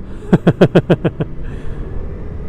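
A man laughing: a quick run of about seven short, falling 'ha's lasting about a second, over steady low riding noise.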